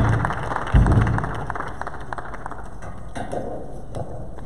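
A small audience clapping in welcome, thinning out after about three seconds. Two dull thuds from a handheld microphone being handled come near the start, under a second apart.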